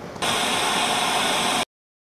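A steady, static-like hiss starts suddenly a moment in and cuts off abruptly about a second and a half later.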